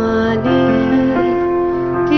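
Electronic keyboard playing sustained chords in an instrumental fill between sung lines, the chord changing about half a second in and again just past a second.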